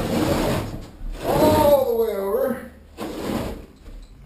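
Carpet being cut with a razor blade and pulled up from the floor: a rasping, tearing noise in the first second and again near the end. A man's drawn-out voice in the middle is the loudest sound.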